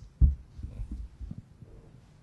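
Low thumps and knocks of handling noise on a panel microphone as it is moved between speakers: one sharp bump about a quarter second in, then several softer knocks.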